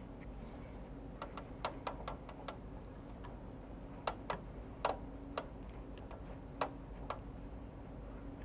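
Light, irregular clicks and ticks from hands working a fly at the tying vise, wrapping thread over foam on the hook: about a dozen small taps, some in quick clusters, over a faint steady hum.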